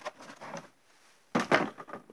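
Plastic tool-case trays and loose metal bits clicking and clattering as they are handled, with a louder rattle late on.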